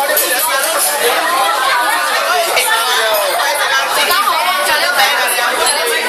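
Many people talking at once: steady group chatter with overlapping voices, none standing out.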